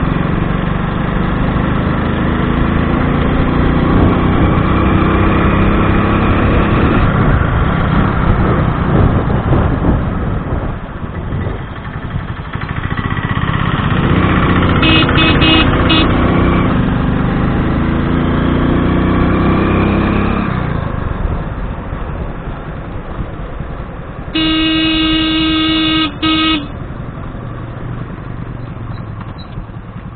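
Motorcycle engine running under way, its pitch rising and falling with the throttle. A horn sounds in a few short beeps about halfway through and in a longer blast, broken once, near the end.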